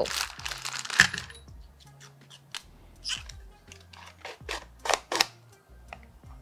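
Small acrylic display-stand pieces clicking and knocking together as they are fitted: a few sharp clicks spread through, the loudest about three seconds in and near the end. Soft background music with a low bass line runs underneath.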